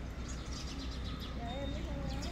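Faint outdoor background: small birds chirping in short high notes over a steady low hum, with a faint wavering call or distant voice near the end.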